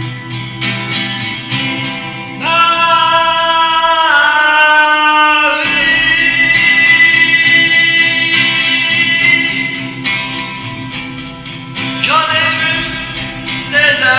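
A man singing in French, holding long notes, to his own acoustic guitar accompaniment. The guitar plays alone at first, and the voice comes in about two and a half seconds in, drops out for a moment past the middle and comes back near the end.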